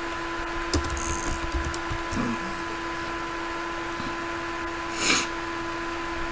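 Room tone with a steady electrical hum, a few light clicks about a second in, and a short burst of hissing noise about five seconds in.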